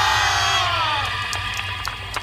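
A group of dancers shouting together in one drawn-out cry that falls in pitch and fades out about a second in, the closing shout of a yosakoi dance.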